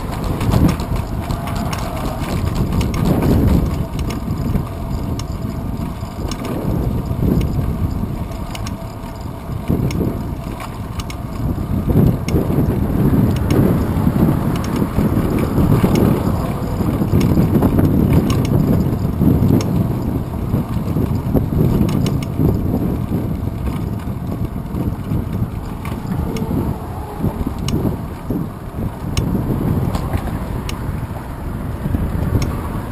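Wind buffeting the microphone of a bike-mounted GoPro Hero 2 while riding, with road rumble and light rattling clicks from the mount. The rumble swells about midway and eases off later.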